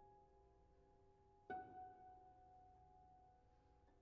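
A string inside a Steinway grand piano plucked by hand once, about a second and a half in, ringing with several overtones and slowly fading. The previous plucked note is still dying away at the start.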